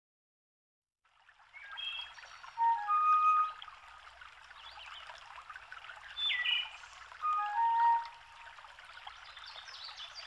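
Birds whistling and calling over a steady rush of running water, fading in after about a second of silence. The clearest whistles come about two and a half, six and seven and a half seconds in.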